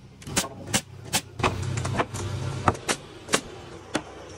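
Pneumatic framing nailer firing nails into wooden studs: about eight sharp, irregularly spaced shots.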